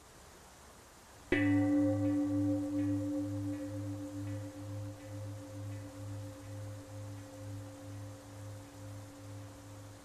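A singing bowl struck once, just over a second in, ringing on a low fundamental with fainter overtones. The ring wavers in a steady pulse of about three beats a second and fades slowly, still sounding at the end.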